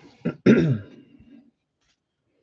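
A man clearing his throat: a short catch, then a louder rasp about half a second in whose pitch falls.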